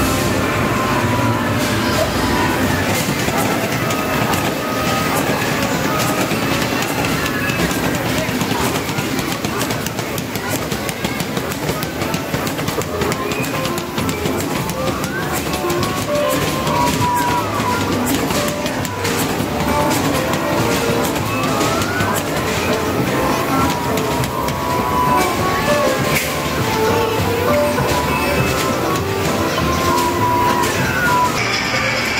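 Busy arcade game-room din: electronic music and jingles from the game machines mixed with the chatter of voices, steady throughout, with scattered clicks and short rising and falling electronic tones.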